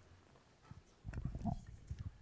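Soft bumps and rustling of objects handled on the speakers' table close to a microphone, starting about a second in.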